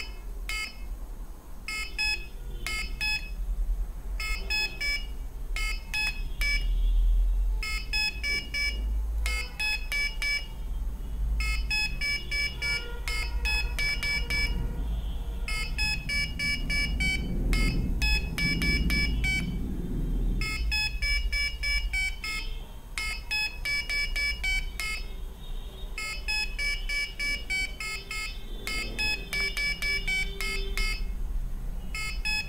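Piezo buzzer on an Arduino memory game sounding short electronic beeps in quick runs, one beep per LED flash, as the game plays a sequence and the player repeats it on the push buttons. A steady low hum runs underneath.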